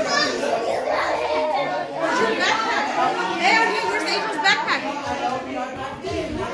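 Many children's voices chattering and calling out over one another in a large indoor room, with no single clear speaker.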